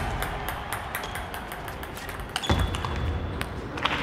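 Quiet hall background after music fades out at the start, broken about two and a half seconds in by one sharp click followed by a short, thin, high ringing ping; a few lighter clicks come near the end.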